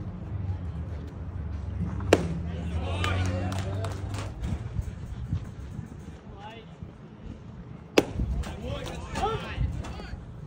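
Two pitched baseballs smacking into the catcher's leather mitt, each a single sharp pop, about six seconds apart, with players' voices calling out after each.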